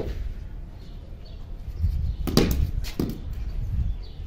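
Wind rumbling on an outdoor microphone, with sharp knocks about two and a half seconds and three seconds in.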